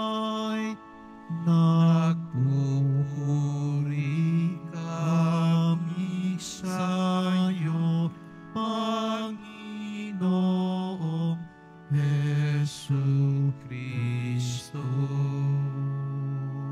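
Church singing of the Gospel acclamation over sustained instrumental accompaniment, in several short phrases separated by brief pauses.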